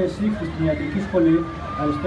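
A man speaking Greek into a lectern microphone, reading from a prepared speech.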